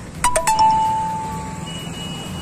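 A bell-like chime: three quick strikes, then one clear tone ringing out and fading over about a second, over a low street rumble.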